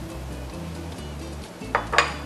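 Background music over light clinks of a spoon and bowls against a china plate, with a sharp clink near the end.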